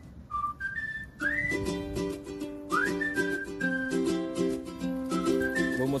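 Background music: a whistled melody whose phrases swoop up into each note, over a plucked-string accompaniment with a steady beat.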